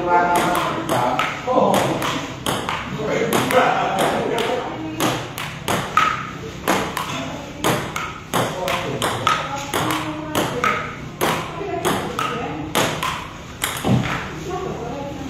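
Table tennis rally: the celluloid ball clicking off paddles and the table in a quick, uneven run of sharp taps, about two or three a second.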